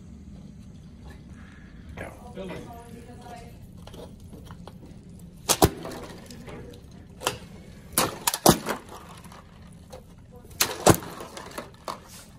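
Steam-filled cans imploding as they are plunged upside down into ice water: a series of about five sharp cracks, the first some five seconds in. The water vapour inside condenses, so the outside air pressure crushes each can.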